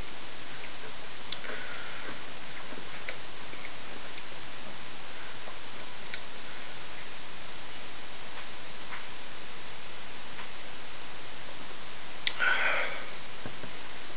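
Steady hiss of a small room picked up by a webcam microphone, with a few faint clicks and a short breath about twelve seconds in, after a sip of beer.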